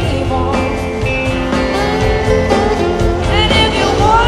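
Rock band playing live, with electric and acoustic guitars over bass and drums; a lead line bends its notes near the end.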